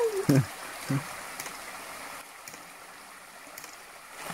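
Shallow river water running steadily over rocks, with two brief vocal sounds in the first second.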